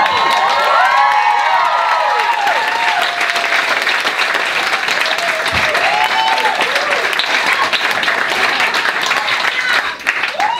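Audience applauding steadily, with a few voices whooping over the clapping in the first three seconds and again about six seconds in.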